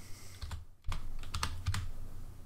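Computer keyboard typing: a handful of separate, sharp keystrokes starting about half a second in.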